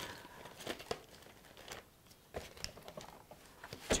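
Faint crinkling and rustling of a clear plastic bag being handled, with a few light clicks and taps.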